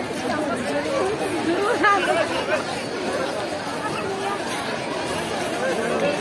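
Crowd chatter: many people talking at once in overlapping voices, with no single voice standing out and a slightly louder stretch about two seconds in.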